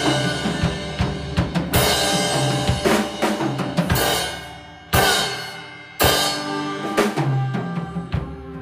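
Live band playing with no vocals: electric guitar chords ringing over a drum kit, with big crash-cymbal hits left to ring out, the loudest about five and six seconds in.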